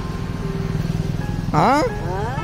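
A small engine running steadily with a rapid low pulsing, then a brief voice rising and falling near the end.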